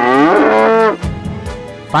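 A loud, drawn-out pitched call lasting just under a second, its pitch sliding up and then down, over background music.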